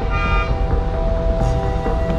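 Street traffic rumble with a car horn sounding briefly at the start. Background music holds sustained notes underneath.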